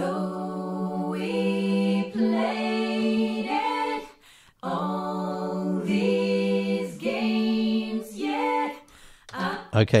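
Multi-tracked a cappella harmony backing vocals playing back as sustained chords, with room-mic ambience from the UAD Sound City Studios plugin blended in. Two long held phrases, with a short break about four seconds in.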